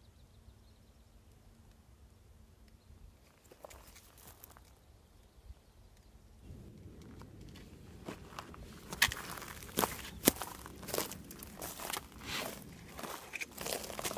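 Footsteps crunching on a dry forest floor of pine needles and twigs, quiet at first and becoming louder and more frequent about halfway through, with irregular sharp crackles.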